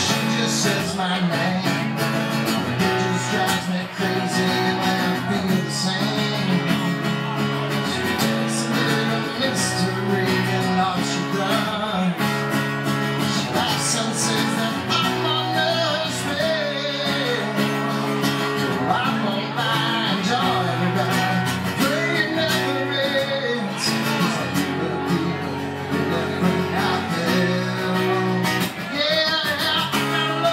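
Live country-rock song: an acoustic guitar strummed steadily, with a man singing over it.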